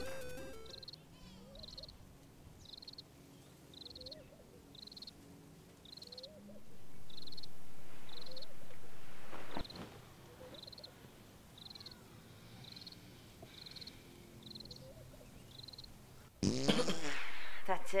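Crickets chirping steadily, about two chirps a second, over a quiet night. In the middle comes a loud fart of about three seconds that cuts off suddenly, from a sleeping man who is gassy after cheesy jalapeno poppers. A loud burst of voice follows near the end.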